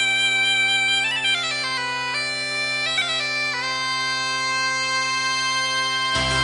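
Bagpipe music: a melody stepping up and down over a steady drone, settling onto one long held note for the last two seconds or so.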